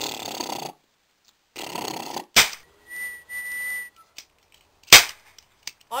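Comic fart noises: several hissing blasts of air, broken by two sharp, loud bangs about two and a half and five seconds in, the second the louder.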